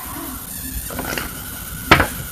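Quiet handling of a sheet of paper held close to the microphone: faint rustles and clicks, with one short sharp sound near the end.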